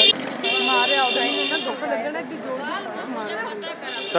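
A steady, high buzzing tone sounds for about a second, starting about half a second in, over people's chatter.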